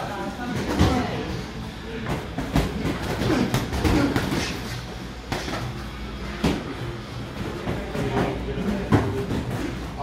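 Boxing gloves striking headgear and gloves, and feet shuffling on the ring floor, during sparring: irregular sharp knocks every second or so, with voices in the background.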